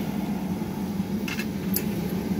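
Steady low hum of running glass-studio equipment, with a short hiss about one and a half seconds in and a faint click just after.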